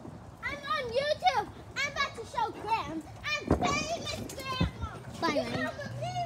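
Children's high-pitched voices calling out and chattering while playing, with gliding, sing-song pitch and no clear words, and a sharp knock about three and a half seconds in.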